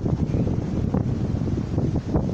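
Steady wind noise on the microphone over the wash of shallow seawater.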